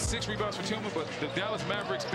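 Basketball game sound from an arena: a ball dribbled on the hardwood court under a murmuring crowd.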